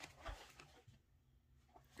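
Near silence, with a few faint clicks in the first half-second as a hamster gnaws at a plastic toy wheel.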